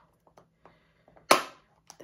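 A round plastic Zyn nicotine-pouch can being worked at with the fingers: a few faint taps and scratches, then one sharp, loud snap of its tight plastic lid about a second and a quarter in.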